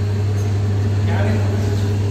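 Papad making machine running, its electric gear-motor drive and conveyor belt giving a steady low hum.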